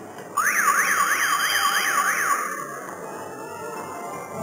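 An electronic warbling signal that starts suddenly and sweeps rapidly up and down in pitch, about three times a second, for about two seconds before cutting off.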